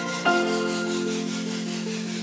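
Background music of sustained, steady chords, with a new chord coming in about a quarter of a second in.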